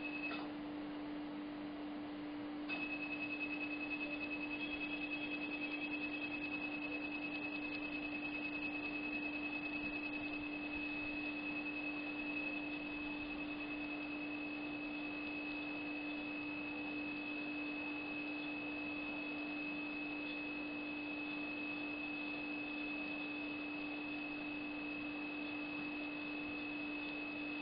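Dental surgical laser's high, steady electronic tone, which sounds while the laser is firing. It cuts out just after the start and comes back about three seconds in, over a steady low hum.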